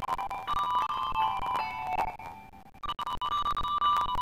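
A small instrumental ensemble plays a slow melody of bright, ringing, bell-like notes. Around two and a half seconds in the notes die away briefly, then a new chord rings out.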